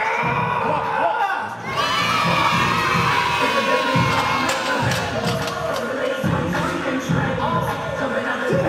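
Loud strained yelling and groaning from a man grinding out the last reps of a heavy barbell back squat set near failure, with one long drawn-out yell starting about two seconds in. It is a retching-like strain noise, like the feeling just before throwing up.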